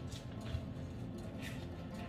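Faint sounds of a kitchen knife cutting through a mandarin's peel on a wooden cutting board, with a soft knock about half a second in.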